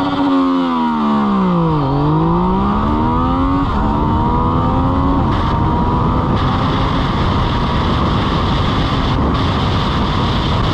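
Yamaha MT-09's inline three-cylinder engine accelerating hard from a standing start, heard from on board. The revs dip as the clutch takes up and then climb steadily, with quick-shifted upshifts nearly four and about five seconds in. From about six seconds on, loud wind rush on the microphone at over 150 km/h covers the engine.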